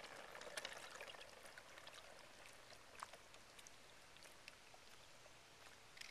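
Faint splashing and trickling of shallow floodwater stirred by a child's tricycle wheels, with scattered small ticks of water.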